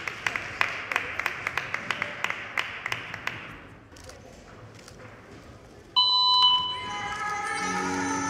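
Audience clapping that fades out over the first few seconds. After a short lull, the routine music starts suddenly about six seconds in, with a few held high tones, then fuller music.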